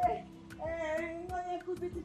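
A voice singing long held, slightly wavering notes over a steady beat of about three ticks a second: a song on the soundtrack.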